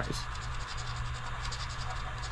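Plastic poker chip scraping the latex coating off a paper scratch-off lottery ticket in quick, rapidly repeated strokes.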